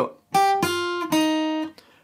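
Acoustic guitar, capoed at the third fret, picking a three-note run of single notes: the open high E string, then the B string at the third fret, then the B string at the first fret. Each note is plucked once and rings, the three stepping down in pitch and dying away before the end.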